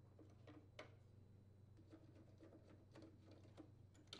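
Near silence with a few faint, scattered clicks and taps of a hand handling the plastic diverter motor on the washer's outer tub.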